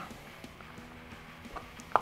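Soft handling of a collapsed collapsible cup in the hands, with a couple of light taps near the end, over faint background music.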